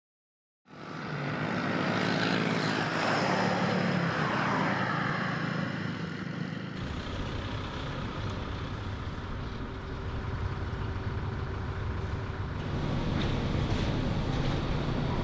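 Road traffic with vehicles driving past, starting after a moment of silence; one vehicle passes close between about two and five seconds in. About seven seconds in the sound changes abruptly to a deeper, steady rumble.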